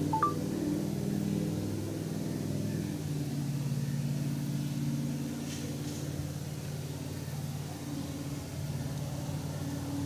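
A steady low machine hum, made of several level tones, continues throughout. A short electronic beep sounds just after the start.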